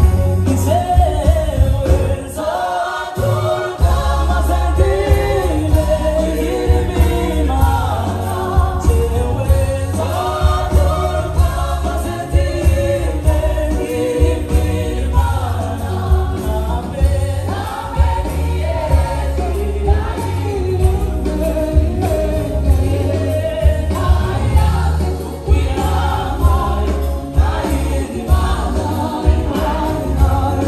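Live gospel choir and band performing a song: choir singing over electric guitars, keyboards and drums, with heavy bass and a steady beat. The bass drops out briefly near the start, then comes back in.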